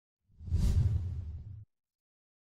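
Whoosh sound effect of an animated logo intro: a deep rumbling rush with an airy hiss on top, which swells quickly, tails off and then cuts off suddenly.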